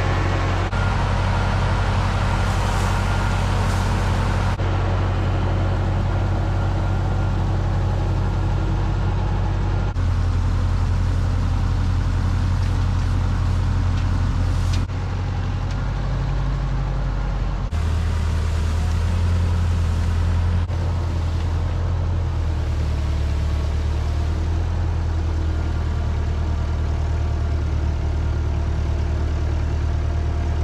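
Tractor engine running steadily while it lifts and places round hay bales onto a feed wagon, its pitch and level changing abruptly a few times.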